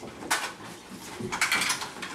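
Movement and handling noise from performers: two short scraping, rustling bursts, one about a third of a second in and a longer one around a second and a half in, while hand mirrors are passed out.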